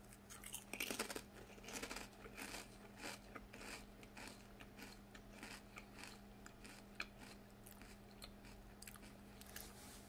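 A Ruffles ridged potato chip being bitten and chewed close to the microphone: a quick run of crisp crunches in the first few seconds, thinning out to occasional quieter crunches.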